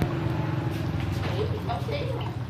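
A steady low hum, like an engine idling, under people talking.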